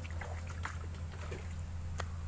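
Plastic bucket dipped into shallow floodwater to scoop some up, with a few short splashes and sloshes, mostly in the first second, over a steady low hum.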